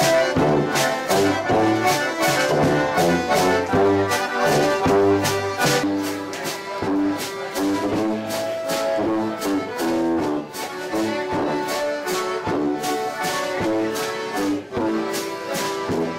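Live polka band music: three concertinas playing the melody over a tuba's oom-pah bass and a drum kit with cymbals keeping a steady beat.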